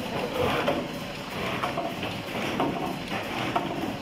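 Automatic soap cartoning machine running, a steady mechanical clatter of repeated clicks and clacks from its moving parts.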